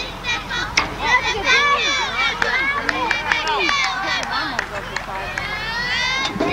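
Many children's voices calling out and chattering over one another from the team bench and sidelines, with a sharp knock or two about a second in.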